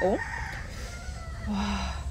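A rooster crowing once, a single long crow that is fainter than the nearby talking.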